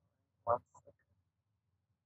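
One short vocal sound from a person about half a second in, followed by a couple of fainter, briefer ones. Otherwise near silence.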